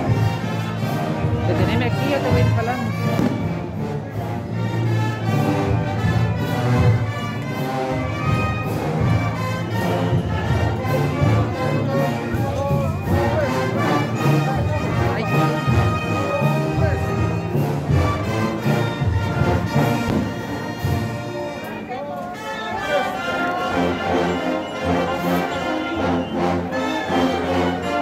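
Procession brass band playing a slow processional march, with crowd voices underneath.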